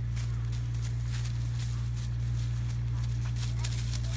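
Footsteps crunching irregularly on dry corn leaves and a dirt path, several soft steps a second, over a steady low hum.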